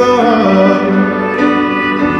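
Live acoustic performance: a male voice singing over strummed acoustic guitar and a bowed cello.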